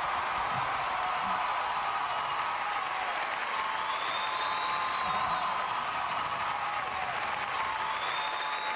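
Live audience applauding steadily as a comedian is called to the stage.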